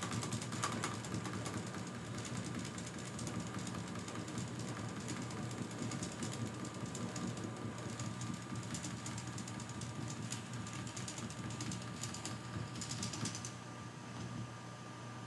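Computer mouse scroll wheel clicking in quick runs as a list is scrolled, over a steady low hum.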